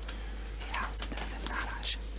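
A man whispering into a woman's ear: soft, breathy speech with no voiced tone.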